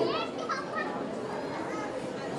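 Children's voices in the background: a few high, sliding calls in the first second, then a low murmur of the crowd.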